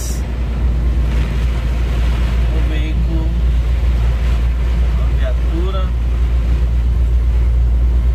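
Inside a truck cab on a wet motorway: the diesel engine pulling in fifth gear with a steady low drone, over a constant hiss of tyres and rain spray on the flooded road.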